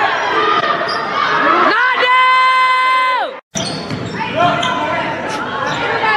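Basketball game sound in a gym: a ball bouncing and voices calling out in a large, echoing hall. About two seconds in comes a held pitched tone of a little over a second, and then the sound cuts out for a moment.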